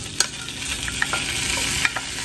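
Sliced smoked sausage dropping into hot oil in a cast-iron skillet and starting to sizzle, the sizzle building as more slices go in, with a few sharp taps as pieces land.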